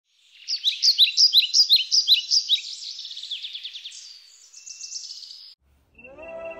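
A songbird singing: a run of quick, high, repeated notes about five a second, turning into faster trills and cutting off suddenly near the end.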